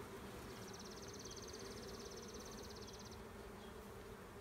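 A faint, steady hum of honey bees buzzing over a brood frame lifted from an open hive. A high, rapid trill sounds faintly from about half a second in to about three seconds.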